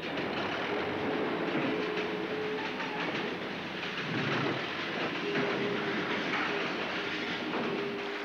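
Heavy industrial machinery clattering and rattling in a dense, continuous din. A steady whine sounds over it twice: from about a second in, and again from past the middle to the end.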